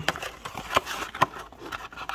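Cardboard Panini Select trading-card blaster box being opened and handled: a few sharp taps and clicks over a low rustling as the flaps are pulled back and the packs inside are handled.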